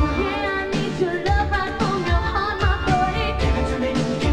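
A woman singing the lead vocal of a dance-pop song into a microphone, over a full band with a steady kick-drum beat.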